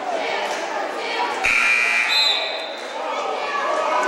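Gymnasium scoreboard horn sounding once, about a second and a half in, for under a second, signalling a substitution during a stoppage in play. Crowd chatter runs underneath.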